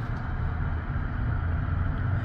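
Steady low rumble of outdoor background noise, with no distinct events standing out.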